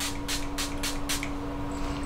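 Fine-mist pump spray bottle of face tanning water spritzed about six times in quick succession, roughly four or five short hisses a second, stopping a little past halfway. A steady low hum runs underneath.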